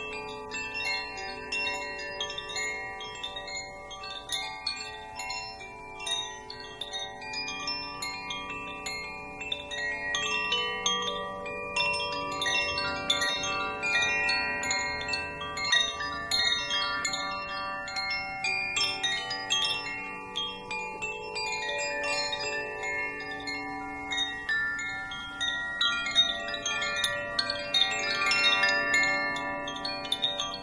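Wind chimes jingling without a break, with many high metal tones struck in quick clusters and ringing over one another.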